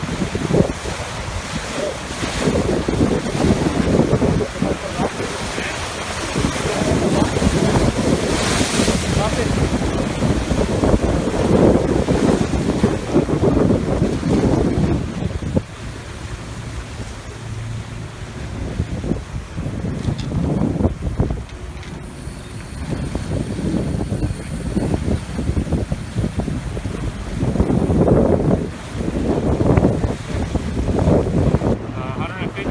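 Surf breaking and washing over the jetty's granite boulders, with wind buffeting the phone's microphone. It is heaviest in the first half, eases about halfway through, and swells again near the end.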